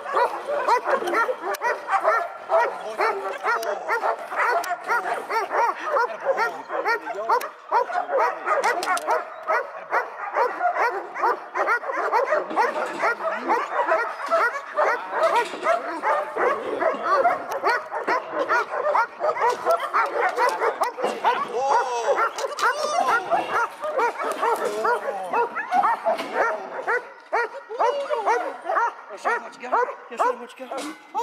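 Seven-month-old German shepherd pup barking and whining almost without pause, a rapid run of short, high, pitch-bending calls, as it strains on the leash toward a bite sleeve in drive.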